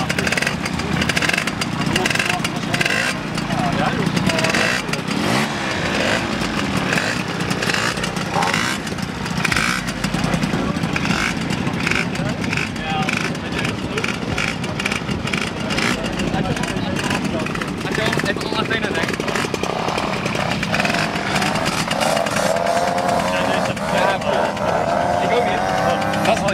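Two-stroke moped engine running steadily, its pitch rising near the end, with people talking over it.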